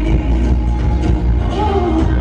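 Live pop concert music played loud over an arena sound system, with a heavy steady bass and a pitched vocal line sliding near the end.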